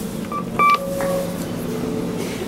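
2005 KONE elevator car-panel push button giving electronic beeps as a floor call is registered: a short beep, then a louder, brief beep about two-thirds of a second in, followed by a fainter lower tone.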